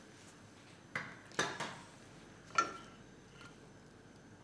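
Three short knocks and clinks of kitchenware about one, one and a half, and two and a half seconds in, as an oil bottle is set down and a small square frying pan is picked up off the gas hob; the last knock rings briefly.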